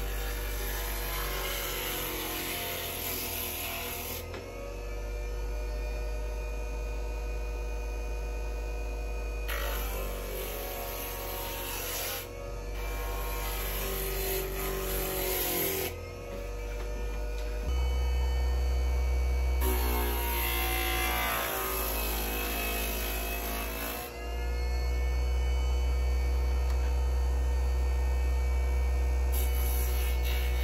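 Tandy Pro burnishing machine's electric motor running with a steady hum as leather edges are pressed against its spinning sanding drum, adding a hiss in several passes of a few seconds each. The low hum grows heavier a little past halfway.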